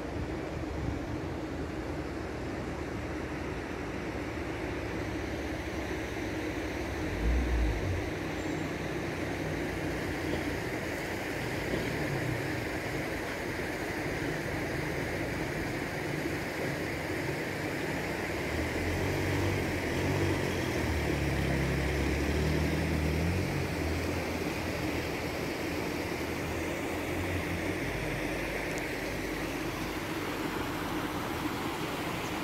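Steady drone of a vehicle driving along a road, engine and road noise together, with a low thud about seven and a half seconds in and a heavier low rumble a little past the middle.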